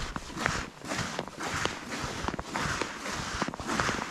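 Boots walking on thin, frost-covered first ice, each step a short crunch at a steady walking pace of about one and a half steps a second.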